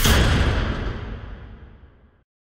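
A deep cinematic boom from an animated logo sting. It hits at once and dies away over about two seconds.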